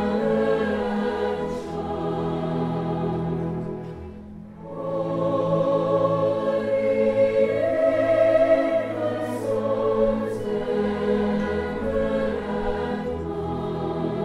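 A school orchestra and choir perform a Christmas carol medley together in sustained chords. The music drops away briefly about four seconds in, then swells back to its loudest a few seconds later.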